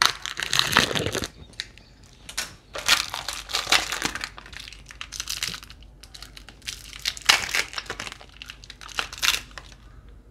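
Clear plastic wrapping crinkling in irregular bursts as it is cut with scissors and pulled off a stack of coasters.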